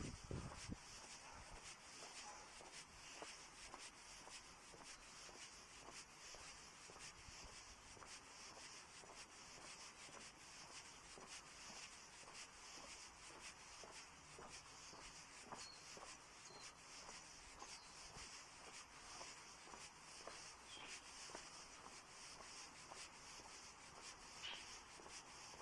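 Near silence: a faint steady hiss with soft, regular scuffs of footsteps on asphalt and light rubbing as someone walks.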